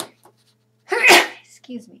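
A woman sneezes once, sharply, about a second in, after a short breath in; a brief spoken word follows near the end.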